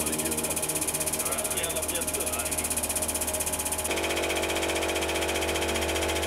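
Hydraulic press pump and motor running with a steady hum as the ram squeezes a wet sponge, the tone shifting and getting fuller about four seconds in as the press works harder.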